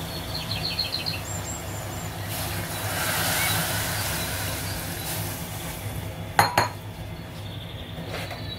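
Water poured from a jug into a pressure cooker pot of chickpeas, splashing steadily for about three seconds, followed by two sharp clinks a moment later, all over a low steady hum.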